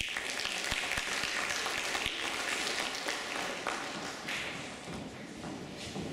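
Audience applauding, starting suddenly and easing off a little after the first few seconds.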